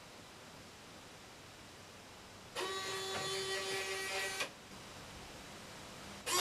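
The EZ:1 robot's arm motors whirring with a steady, even-pitched whine for about two seconds, starting about two and a half seconds in, as the arm swings its pointer to a new position.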